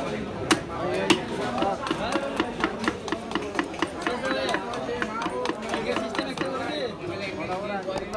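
Large knife chopping through a rohu fish head on a wooden chopping block. Two heavy blows come about a second in, followed by a quick, even run of lighter strokes at about four a second, with voices talking in the background.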